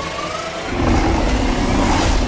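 Film-trailer sound mix of a car chase: a car engine running hard, with a dense layer of effects and score over it.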